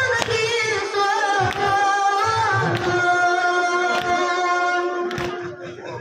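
A male voice chanting a Kashmiri nowha, a Shia lament for Muharram, in long wavering notes that settle into one held note, then tail off just before the end. Sharp knocks sound at intervals beneath the voice.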